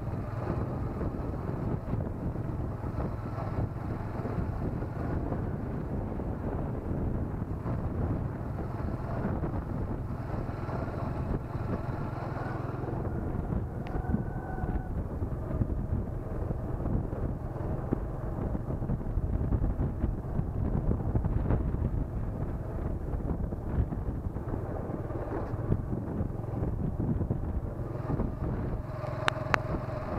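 Wind buffeting the microphone over a continuous low rumble from riding along a rough dirt track, with a couple of sharp clicks near the end.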